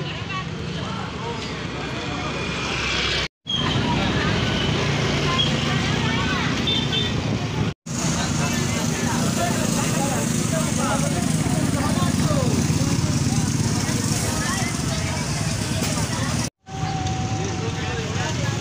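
Busy street-market ambience: motorcycle and vehicle traffic running steadily, with many people's voices chatting and calling around the stalls. The sound drops out completely for a moment three times, where clips are joined.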